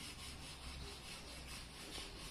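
Faint steady outdoor background noise: a low rumble with a hiss above it, and no distinct clucks.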